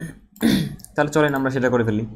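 A man briefly clears his throat with a short rough burst, then goes on talking.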